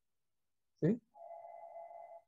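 A single steady electronic beep lasting about a second, starting just over a second in.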